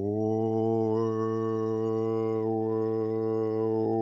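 A man's overtone singing: one long, steady low drone held through, with the bright upper overtones above it shifting a few times.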